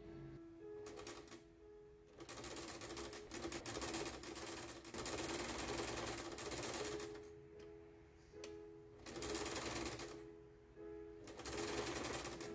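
Janome electric sewing machine stitching through folded cotton-like fabric in several starts and stops: a short burst about a second in, a long run of several seconds in the middle, then shorter runs near the end.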